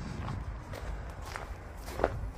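Footsteps of a person walking, a few soft steps roughly half a second apart, over a low steady rumble.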